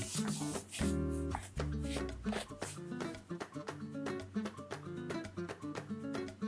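Background music: a steady run of plucked notes over low bass notes.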